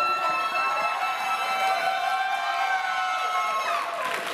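One person's long, high-pitched cheering "whoo" that swoops up in pitch and is then held on one note for nearly four seconds before breaking off near the end.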